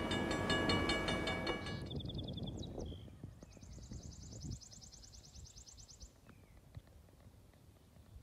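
Diesel locomotive running with a steady hum, cut off about two seconds in. Then quiet outdoor air with a small bird trilling rapidly for a few seconds.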